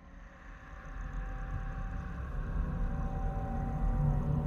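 Eerie ambient intro drone: a low rumble with a faint steady hum above it, fading in from near silence and growing steadily louder.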